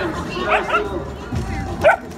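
Puppies barking: a few short, high barks, one about half a second in and another near the end.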